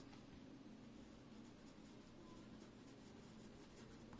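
Very faint scratching of a Kanwrite medium fountain pen nib writing on paper. The nib has a toothy feel with some feedback, and it is barely above room tone.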